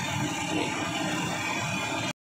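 Kachoris deep-frying in a large iron karahi of hot oil: a steady sizzle and bubbling of the oil, with faint street noise behind it.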